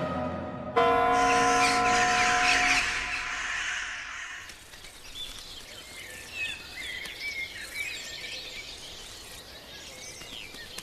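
Music ends on a held chord with a noisy wash over it, fading away over the first few seconds. Birdsong then follows: small birds chirping in short calls over a low steady background.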